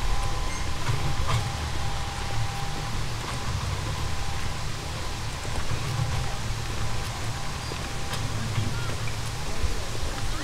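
Low, fluctuating rumble of wind on the microphone outdoors, with a faint thin steady tone for the first few seconds.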